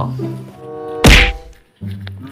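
A single loud thud about a second in, over background music with held notes.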